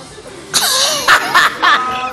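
A person close to the microphone bursts out laughing about half a second in: loud, breathy, coughing bursts that keep coming in quick succession.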